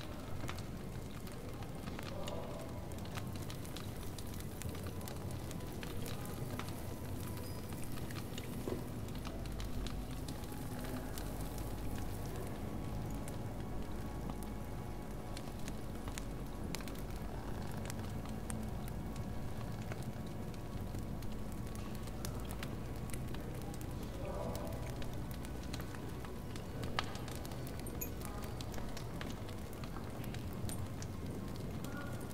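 Fire crackling in a hearth: a steady run of small pops and snaps over a low rumble, with one louder pop near the end.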